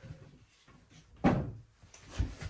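A single heavy clunk about a second in, as a porcelain toilet is rocked loose and lifted off its floor flange.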